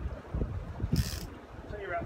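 Wind buffeting the microphone in uneven low gusts, with a brief high hiss about a second in.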